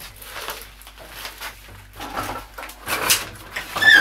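Irregular knocks, scuffs and rustling of a person moving about out of sight, with a brief squeak near the end.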